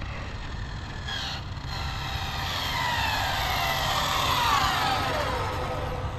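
Arrma Limitless RC speed-run car coasting in with no throttle: its Castle 1650 brushless motor and drivetrain whine, sliding down in pitch as the car slows and getting louder as it nears, over a steady hiss of tyres on asphalt.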